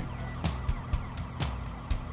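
Quiet music bed under street ambience with a faint wailing siren, and two soft knocks about a second apart.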